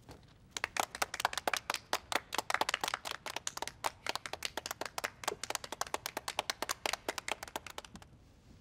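A small group of people clapping their hands, a quick, uneven run of sharp claps. It starts about half a second in and stops just before the end.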